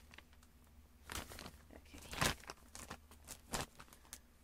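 Wrapping paper crinkling as it is handled, in a few short, quiet rustles.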